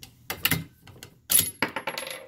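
Bolt of a Savage bolt-action rifle being worked on a chambered spent case: a few sharp metal clicks and clacks, the loudest about one and a half seconds in, followed by a brief high ring.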